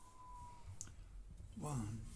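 Quiet room tone with a few faint clicks, then a man's voice starting a count-in near the end, before the guitar comes in.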